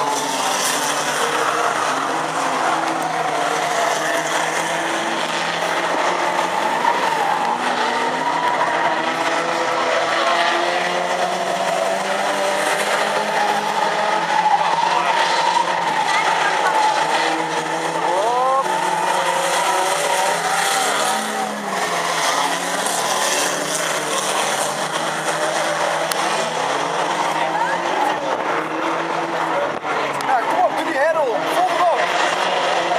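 Several banger cars' engines revving together in a destruction derby, their pitches rising and falling over one another, with occasional sharp knocks.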